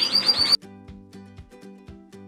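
A canary's quick run of high, repeated chirps, cut off abruptly about half a second in. Soft background music with a steady beat follows.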